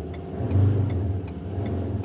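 Ford Endeavour's diesel engine briefly revved while stationary, heard from inside the cabin: a low hum that swells about half a second in and eases off near the end.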